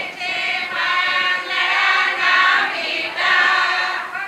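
A group of women singing together, holding long notes in phrases with short breaks between them.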